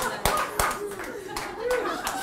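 Audience laughing and clapping in response to a joke, with a few sharp, scattered handclaps in the first second, then laughter and voices.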